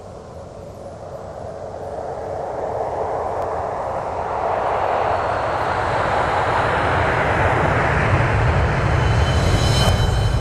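A sound-effect swell for an animated logo intro: a rushing noise over a deep rumble that builds steadily louder and higher, peaking near the end, where a few faint high ringing tones come in.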